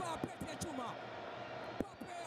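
A football commentator's voice over match footage, with frequent low knocks and one sharp click near the end.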